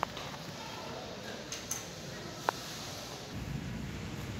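Steady indoor background noise with a few brief sharp clicks, the loudest about two and a half seconds in, and a low rumble near the end.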